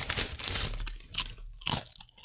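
A person chewing crunchy Bake Rolls bread chips, a string of irregular crunches, loudest near the start and again just before the end.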